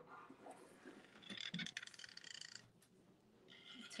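Near silence, with faint scratching and ticking of a fine Posca PC-3M paint-marker tip drawing on a door-hanger blank, from about a second in to nearly three seconds in and again briefly near the end.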